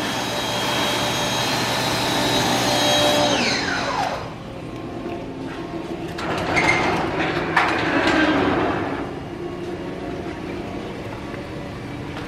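Electric shop-vacuum motor running with a steady high whine, then switched off about three seconds in, its pitch falling quickly as it spins down. Lower, uneven workshop noise follows.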